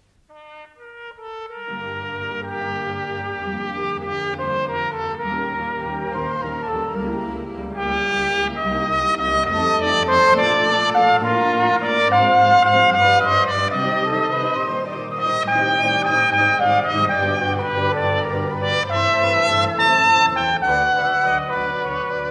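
Symphony orchestra playing a musical interlude between scenes. It enters softly in the first two seconds and swells louder about eight seconds in.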